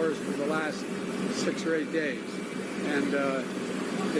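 A man's voice speaking, with a steady low hum beneath it.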